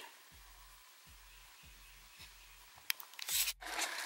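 Near silence for most of the stretch, with a faint low hum that pulses about twice a second. A single sharp click about three seconds in, then brief faint handling noise near the end.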